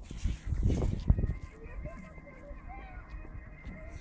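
Wind buffeting the microphone on a moving electric unicycle, strongest in the first second and a half, with faint voices in the background.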